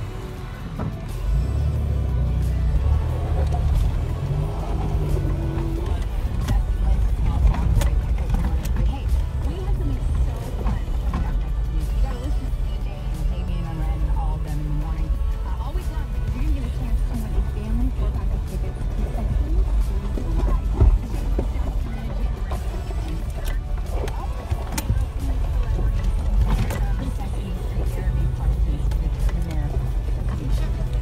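Low, steady rumble inside the cab of a 1992 Toyota 4Runner crawling along a rough, snowy dirt trail: engine and road noise, starting about a second in. Music and some talk sit over it.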